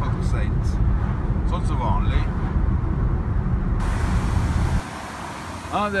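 Steady low engine and road rumble inside a moving vehicle's cabin, with faint voices over it. About five seconds in the rumble stops abruptly, leaving a quieter outdoor hiss.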